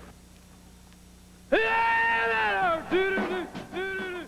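A man's high-pitched screaming vocal that starts suddenly about a second and a half in. It opens with one long held cry that falls in pitch at its end, then breaks into shorter yelps. Before it there is only a low hum.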